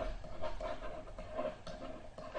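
A stylus writing on a drawing tablet: a run of short pen strokes and a few light taps.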